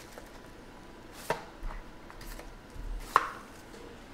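Cardboard trading-card boxes and a foil card pack being handled and set down on a table: two sharp knocks, the second and louder about three seconds in, with lighter taps and rustles between.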